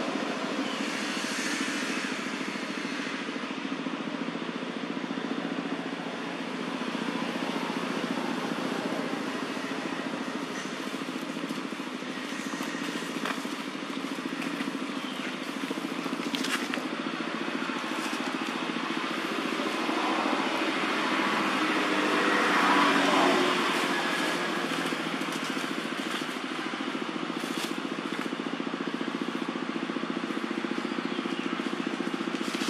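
Motor vehicle engine running steadily, growing louder for a few seconds about two-thirds of the way through, as if passing close, with a few light clicks.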